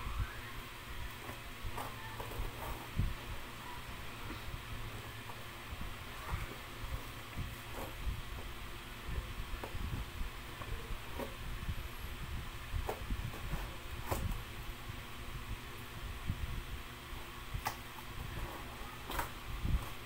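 Metal scissor tips poking and scraping at packing tape on a cardboard box: irregular small clicks and scratches every second or two, over a steady low hum.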